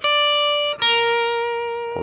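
Electric guitar (Epiphone SG) playing sustained single lead notes. The 10th fret on the high E string sounds first, then just under a second in the 11th fret on the B string is picked and held, slowly fading.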